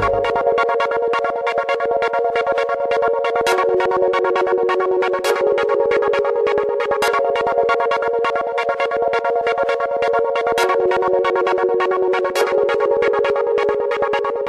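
Electronic music: the deep bass drops out at the start, leaving sustained synthesizer chords over fast, even ticking percussion, with a brighter accent hit about every two seconds.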